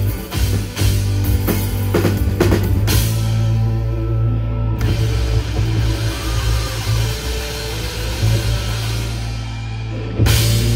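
Live rock band playing: drum kit, bass, electric guitar and electric piano. The drums hit hard for about the first three seconds, then the band holds a long sustained chord over a steady bass.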